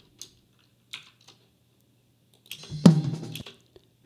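A few soft computer mouse clicks, then playback of a recorded drum kit's first tom microphone track, with tom hits near the end; the loudest, about three seconds in, rings briefly at a low pitch.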